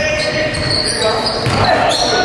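Basketball game on a hardwood gym floor: a basketball bouncing and sneakers squeaking in short high chirps, with voices of players and spectators echoing in the large hall.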